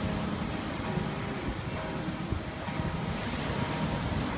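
Wind buffeting the microphone over the sound of surf, with an acoustic guitar faintly playing underneath.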